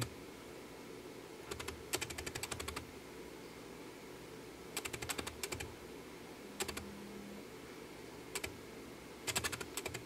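Small plastic buttons on a Syma X8W quadcopter's handheld transmitter being pressed, in quick runs of light clicks with pauses between, and a few single clicks near the end.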